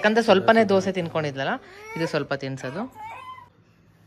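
An adult talking in a high, sing-song voice, in the manner of baby talk, fading out about three seconds in.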